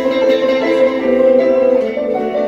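Live band music: electric stage keyboard and electric guitar playing held, sustained chord notes in an instrumental passage.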